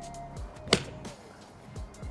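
A golf iron striking a ball off a driving-range mat: one sharp click about three quarters of a second in, over background music.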